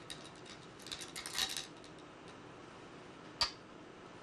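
Go stones clicking: a cluster of small clinks as stones are handled at the bowl, then one stone set down on the wooden Go board with a single sharp click about three and a half seconds in.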